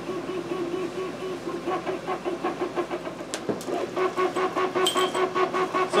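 A steady mechanical hum pulsing evenly about five times a second, with two sharp clicks a little past halfway.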